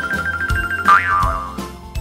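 Children's cartoon music with a steady high tone and regular ticks. About a second in, a cartoon sliding sound effect swoops up in pitch and then falls away.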